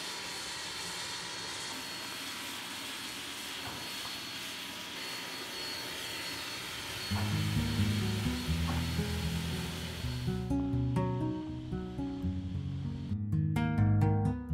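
A steady hiss from a narrow-gauge steam locomotive standing in steam; about halfway through, acoustic guitar music comes in over it, and the hiss cuts off suddenly a few seconds later, leaving the guitar.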